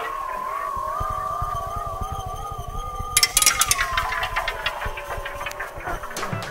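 Experimental art-industrial jazz improvisation: several sustained, gently wavering tones held together, with a burst of rattling clicks a little after three seconds.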